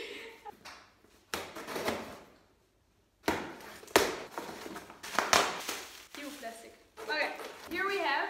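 Cardboard packaging being pulled and torn open by hand: bursts of rustling and tearing with a few sharp knocks, followed by a brief voice near the end.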